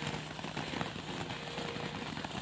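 Ground fountain firework burning, a steady even hiss of spraying sparks.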